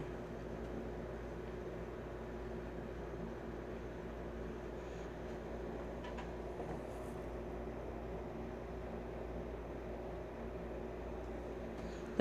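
Steady background hum and hiss of room tone, unchanging throughout.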